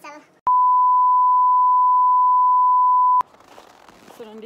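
A single long electronic beep at one steady pitch, nearly three seconds long, switching on and off abruptly.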